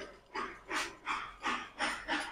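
A person breathing hard in short, soft breaths, about two or three a second.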